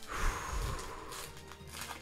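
Foil trading-card booster pack wrapper being torn open and crinkled by hand: a crinkly rustle that starts suddenly, is loudest in the first half-second and fades over about a second.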